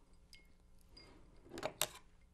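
Two sharp glassy clinks about a second and a half in, as a lemon wedge is pushed down into a glass of ice, after a few faint small ticks.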